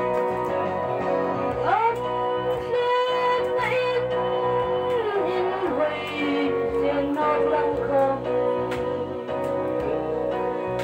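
A woman singing into a microphone over instrumental accompaniment. About two seconds in she holds one long, wavering note for around three seconds, letting it fall at the end before the melody moves on.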